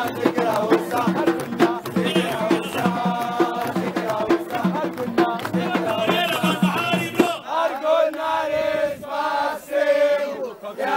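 Nubian wedding zaffa music: a group of men singing and chanting together over a steady beat of hand drums. About seven seconds in the drums stop and the voices carry on alone.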